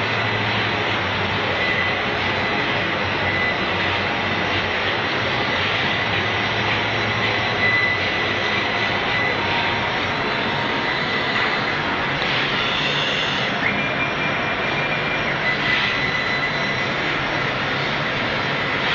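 Laser cutting machinery running: a steady, loud, even rushing noise with a thin high whine.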